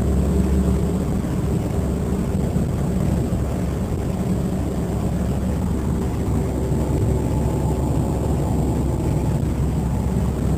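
1955 Fargo pickup's 251 flathead six-cylinder engine running steadily while cruising, heard from inside the cab as an even low drone.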